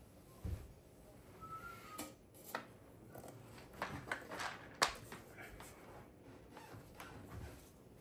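Faint handling noise: light rustling with scattered small clicks and knocks, the sharpest one a little before five seconds in.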